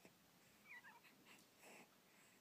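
Faint infant vocal sound: a short, wavering high little noise from a baby about a second in, then a brief breath near the end, over near silence.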